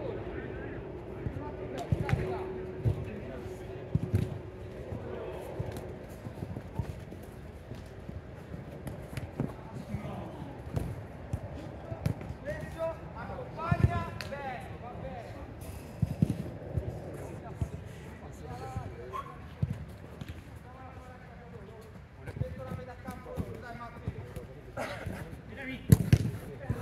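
A football being kicked and bouncing on artificial turf in scattered dull thuds, including a shot that the goalkeeper saves partway through, with players calling out in the distance.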